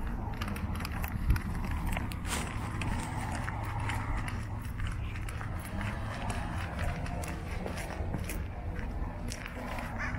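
Footsteps on asphalt pavement, a person walking, with scattered light clicks and a soft thump about a second in, over a steady low rumble.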